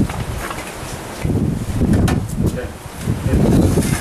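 Several people talking at once in a room, with a few sharp clinks of steel serving vessels and ladles about halfway through.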